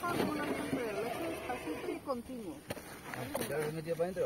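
Indistinct voices of people talking, with a single short click about two-thirds of the way through.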